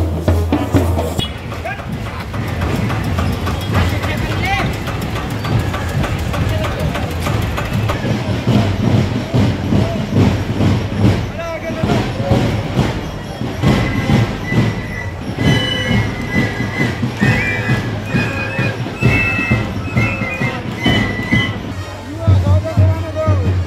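A marching street band playing: side drums beating a fast, steady rhythm, with a high held melody line coming in over it in the second half, amid the chatter of a crowd.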